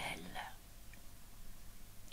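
A woman's reading voice trailing off in the first half second, then a pause with only faint room tone.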